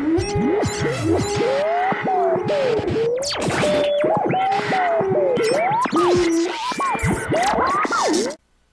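Cartoon opening theme music: a busy, upbeat tune full of tones that swoop up and down in pitch, with sharp clicks along the way.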